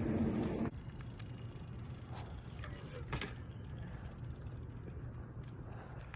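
BMX bike rolling slowly over asphalt, with a low tyre rumble and a few light clicks. The sound drops abruptly to a quieter rumble less than a second in.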